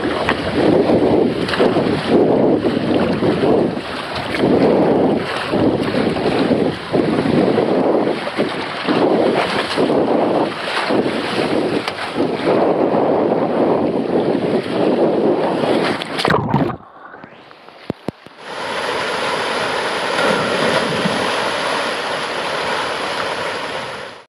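Rushing water and a rider sliding down a fibreglass body slide, loud and surging through the turns. Near the end it drops away suddenly for a couple of seconds, then returns as a steady, even rush of water pouring from slide outlets into a pool.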